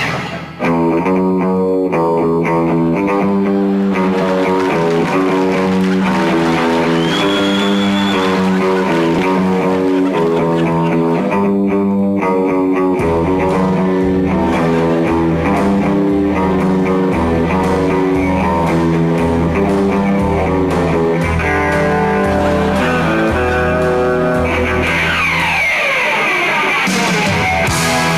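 Rock music led by an electric guitar playing a repeating riff of quick notes; a deep bass line comes in about halfway through.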